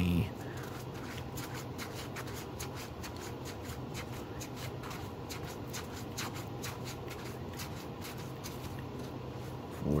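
1996 Signature Rookies basketball cards being passed one at a time through the hands as they are counted: a quick, uneven run of light card clicks and slides, a few each second.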